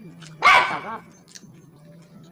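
A single loud dog bark, about half a second long, shortly after the start.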